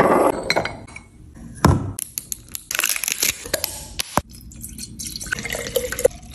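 Glass bottles and containers clinking and knocking as they are handled and set down on a stone countertop, with liquid pouring into a glass carafe near the end.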